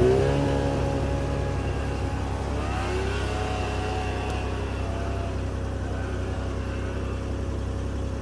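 Snowmobile engine revving hard as the machine pulls away, towing a sled and breaking trail through deep snow. It is loudest at first, rises in pitch again about three seconds in, then settles to a steady, fainter note as it moves off.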